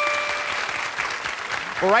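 Studio audience and contestants applauding. A steady electronic chime tone rings over the first half-second and stops.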